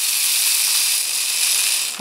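Glass seed beads pouring from a small zip-top bag into a plastic bead storage tube: a steady fine rattling hiss of many tiny beads, stopping at the very end.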